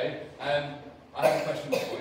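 Speech with a single cough about a second in.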